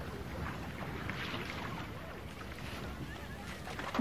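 Indistinct voices over a steady outdoor background hiss, with a short knock near the end.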